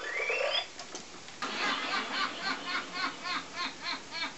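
Toy ray gun's electronic sound effect: a rising whine over about the first second. From about a second and a half in, a steady repeating electronic chirp, about three a second.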